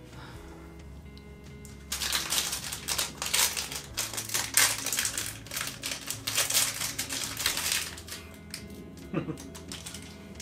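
Plastic toy packaging being crinkled and torn open by hand: a dense run of crackles and snaps starting about two seconds in and lasting about six seconds.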